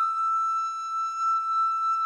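A recorder holds one long, high note that wavers slightly in loudness.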